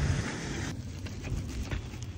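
Low outdoor rumble and wind on the phone microphone. After about three-quarters of a second it drops to a quieter background with light, scattered footsteps and the rustle of plastic grocery bags being carried.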